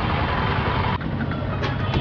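Street traffic close by: small vehicle engines, among them an auto-rickshaw alongside, running as a steady rumble with hiss.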